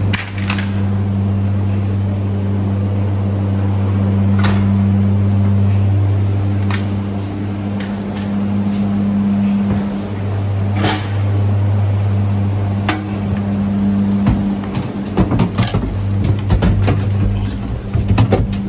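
Gondola terminal machinery running with a steady low hum, with a few sharp clicks along the way. Near the end come irregular knocks and clatter as skis and poles are handled into the cabin.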